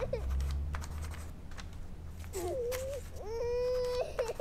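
A young child crying in a tantrum: two long high wails in the second half, the last one held steady for about a second. A few faint taps sound earlier.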